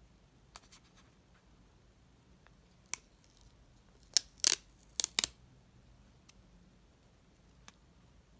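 Clear protective plastic film being peeled off a new AirPods charging case: a few faint ticks, one sharp crackle about three seconds in, then a quick run of about five louder crackles a second later.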